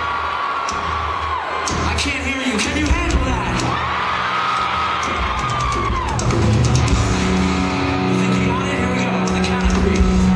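Live rock concert: crowd yelling and whooping, with two long held 'oh' vocal notes, and the band's sustained guitar chords ringing in from about seven seconds in.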